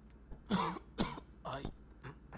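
A person coughing three short times, about half a second apart.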